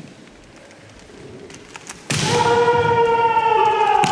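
Kendoka's kiai: a loud, sustained shout that starts suddenly about halfway through and is held for about two seconds, sagging slightly in pitch. A few faint taps come before it.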